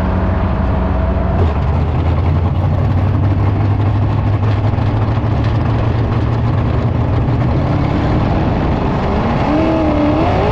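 Sprint car's V8 engine heard onboard, running steadily around a dirt-track turn, with its pitch rising near the end as it accelerates onto the straight.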